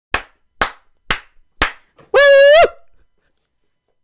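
Countdown sound effect: four sharp ticks about half a second apart, then one short, steady beep.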